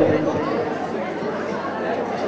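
A man's amplified voice dies away in the hall's echo at the start, then low, indistinct chatter of people in the room.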